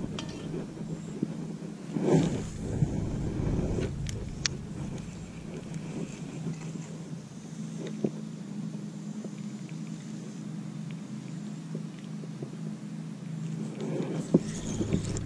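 A steady low mechanical hum, like a motor running, with a louder rumble about two to four seconds in and a few faint clicks.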